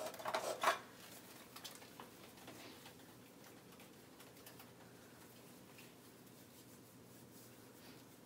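A wall-mounted hand-sanitizer dispenser pumped in the first second, then hands rubbing the sanitizer together, faint and steady.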